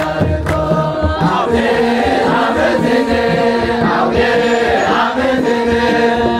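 A group of voices singing an Ethiopian Orthodox hymn (mezmur) together, with a kebero drum beating and hands clapping; the drum strokes are strongest in the first second.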